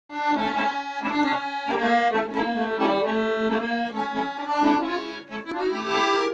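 Chromatic button accordion playing a folk tune, a melody of quickly changing notes over held lower notes.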